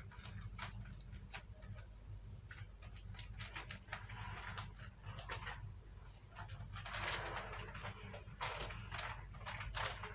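Faint, irregular animal chirps over a steady low hum. They come sparsely at first and thicken into a busy stretch about seven seconds in.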